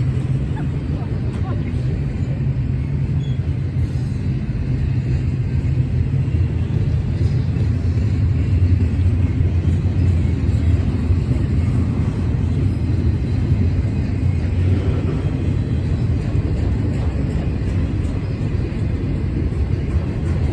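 Double-stack intermodal freight train's container-laden well cars rolling past at speed: a steady, heavy low rumble of steel wheels on rail that swells a little midway.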